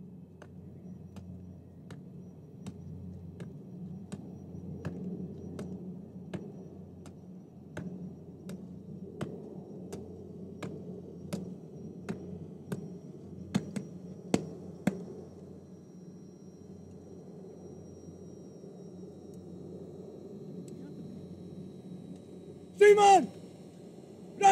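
Parade boots striking the ground in a slow, even march, about one sharp step every 0.7 s, over a steady low hum. The steps stop about fifteen seconds in, and a man's voice calls out briefly near the end.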